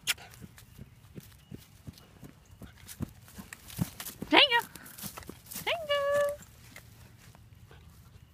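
Irish Terrier puppy scuffling and tugging at a rope on grass: scattered small clicks and rustles. A person laughs briefly about four seconds in, and a short rising voiced sound follows about two seconds later.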